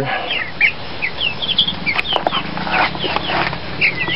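A pen of white broiler chickens calling: many short, high peeps throughout, with some lower clucks about halfway through.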